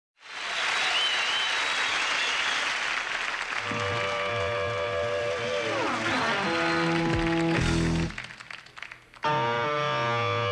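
Studio audience cheering and applauding, then an electric guitar comes in about three and a half seconds in with held notes and a falling slide. The guitar breaks off sharply at eight seconds, and about a second later a fast, driving distorted guitar riff starts.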